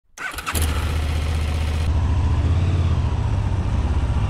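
Motorcycle engine starting: a brief crank and catch in the first half-second, then a steady low idle.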